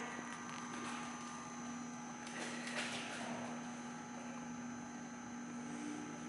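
A steady low hum with a faint high whine above it, as room tone. A brief faint rustling noise comes about two and a half seconds in.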